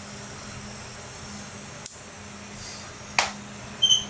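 Quiet room tone with a steady low hum, broken by a single sharp click about two seconds in and a short soft burst of noise a little after three seconds.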